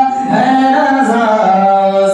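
A man singing a devotional naat unaccompanied into a microphone, holding long melodic notes that bend in pitch, with a brief pause for breath just after the start.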